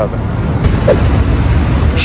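Road traffic noise: a steady low rumble of vehicles on the street.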